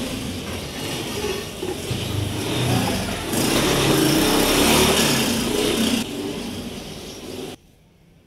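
A motor vehicle engine running and passing close by in the street. It is loudest in the middle and cuts off abruptly near the end.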